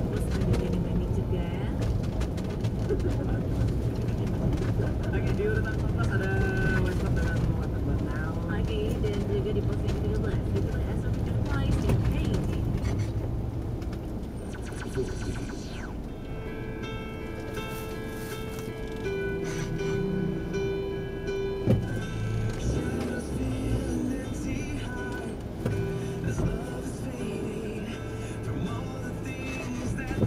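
Car radio playing inside a moving car over low engine and road rumble: talk and music, with steady held musical notes from about halfway in. A single sharp click comes about two-thirds of the way through.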